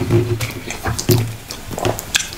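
Close-miked eating sounds of a man chewing fufu, egusi soup and goat meat: wet chewing and lip smacking with many sharp mouth clicks, and two short low hums, one near the start and one about a second in.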